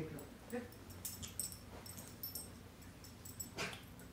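A black-and-tan hound moving about and sniffing at the floor, with scattered light jingling clicks and one short, sharp snuffle near the end.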